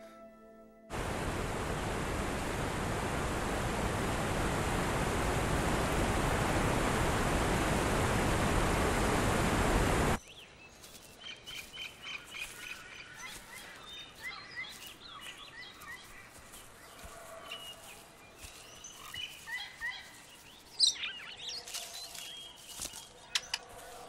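A loud, even rushing noise starts suddenly about a second in and cuts off just as suddenly after about nine seconds. Then comes quieter forest ambience with many short bird chirps and calls, and a single sharp click near the end.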